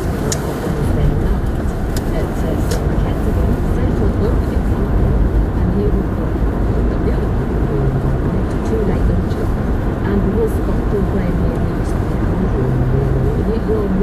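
Steady low rumble of engine and tyres heard inside a moving car's cabin, with a radio talk programme playing faintly underneath.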